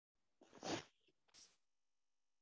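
A short noisy burst of a person's breath about half a second in, then a fainter hiss near one and a half seconds; otherwise near silence.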